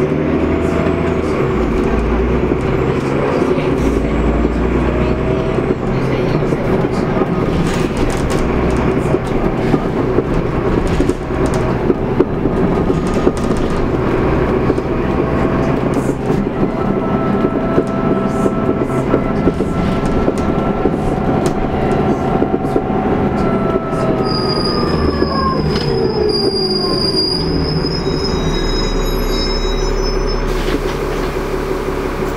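Interior of a Transbus Trident double-decker bus under way, with steady engine and road noise and a drivetrain whine. The whine rises in pitch, then falls away about 24 to 27 seconds in as the bus slows. High-pitched squealing tones, typical of brakes, join near the end.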